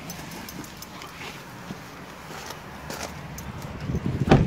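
Rustling and camera-handling noise from someone moving about, with a few faint clicks.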